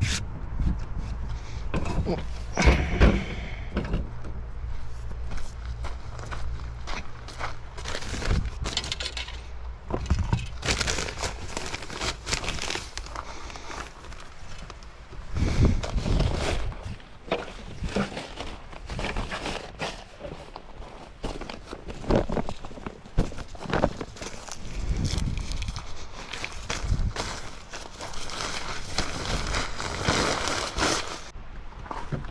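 Camping gear being handled and unloaded: scattered knocks, thumps and rustling, with footsteps.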